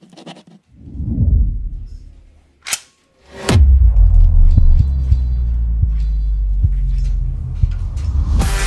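Cinematic sound-design track: a low swelling whoosh, a sharp click, then a hard hit about three and a half seconds in that opens into a loud, steady low drone with light ticks over it.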